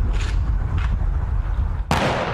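An Air Force honor guard firing party's rifles fire one volley of a ceremonial rifle salute near the end: a single sharp crack with a long echoing tail. It sounds over a steady low rumble.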